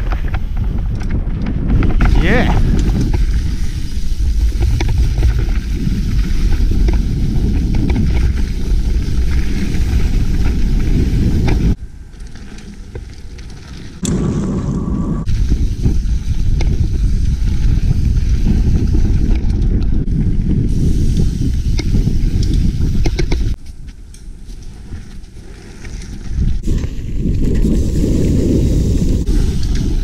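Mountain bike riding fast over a dirt forest trail: a heavy, continuous rumble of knobbly tyres on the ground and the bike and handheld camera rattling, with wind on the microphone. It drops quieter twice, around 12 s and again around 24 s, and a brief squeal rises and falls about two seconds in.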